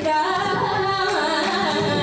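Carnatic vocal music in raga Pantuvarali: a woman singing held, sliding, ornamented notes, accompanied by violin and mridangam.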